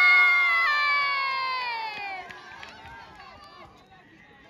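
Crowd of spectators yelling and cheering together in one long shout that slowly falls in pitch and fades over about two seconds, followed by scattered voices.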